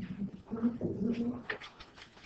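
Low, wordless humming from a person's voice in two drawn-out stretches, followed by a few light clicks near the end.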